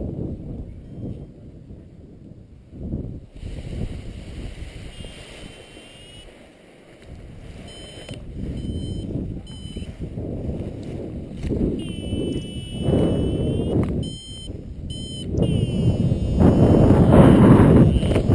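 Wind buffeting an action camera's microphone during a paraglider launch, growing loud over the last few seconds as the pilot takes off. Through it, a paragliding variometer gives short high electronic beeps, some in quick runs that step in pitch.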